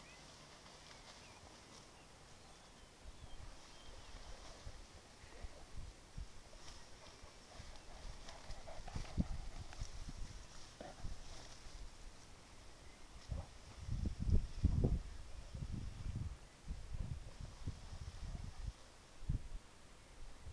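Movement through tall young cereal crop at close range: irregular low thuds and rustling of stalks. It grows busier partway through and is loudest about two-thirds of the way in.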